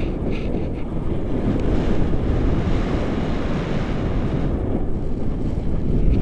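Wind buffeting an action camera's microphone in a tandem paraglider's airflow: a steady low rumble that swells into a fuller hiss for a few seconds in the middle.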